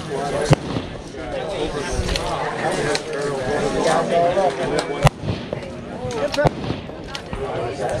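Precision rifle shots: a sharp crack about half a second in and another about five seconds in, with a smaller crack a second and a half after that, over people talking in the background.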